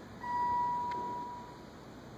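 Elevator arrival chime: a single steady tone that sounds about a fifth of a second in and fades away over about a second and a half. There is a short click partway through.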